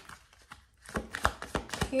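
Tarot deck being shuffled by hand: a quick run of sharp card clicks and slaps starting about a second in, after a quieter stretch with a few faint ticks.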